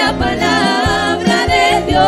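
A group of women singing a Christian worship song together into microphones, their voices wavering on held notes over a steady instrumental backing.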